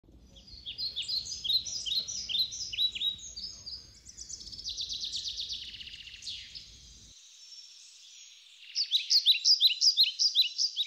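Small songbirds singing: runs of quick, high, downward-sliding chirps with a faster trill in the middle, over a faint low rumble that cuts off about seven seconds in.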